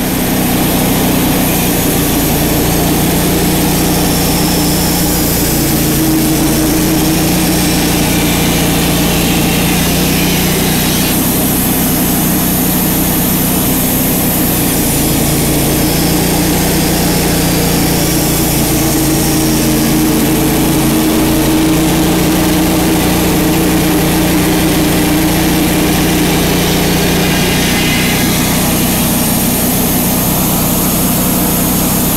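Wood-Mizer portable bandsaw sawmill's engine running steadily, warming up before the first cut, its pitch shifting slightly a few times.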